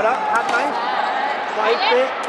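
Sharp slaps of a sepak takraw ball being kicked and struck during a rally, several in quick succession, under excited voices.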